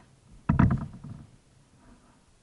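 One kayak paddle stroke: a loud splash-and-knock of the blade entering the water about half a second in, fading within about half a second.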